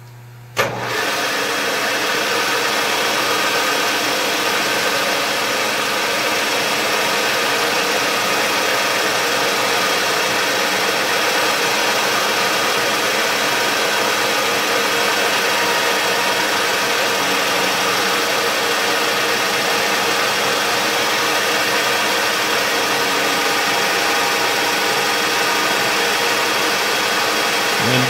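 Knee mill running steadily with the edge finder in its spindle: a loud, even mechanical noise with several steady tones that starts abruptly about half a second in.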